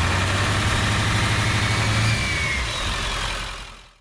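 Sound effect of a car engine running and revving under a loud rushing noise, fading out over the last second.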